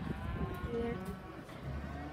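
Cattle mooing: a drawn-out call with a slight bend in pitch, over a low steady engine hum.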